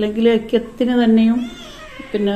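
A woman speaking Malayalam in short phrases, pausing near the end.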